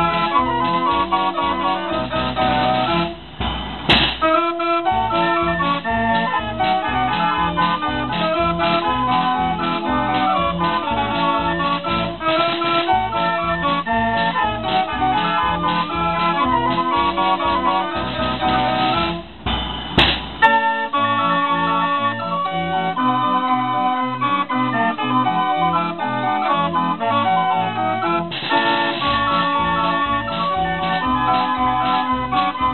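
Wurlitzer band organ playing a tune on its pipes over a steady low beat. It is set up for testing without its trombone pipes and without the forte register in the melody. The music breaks off briefly twice, each time restarting with a sharp crash.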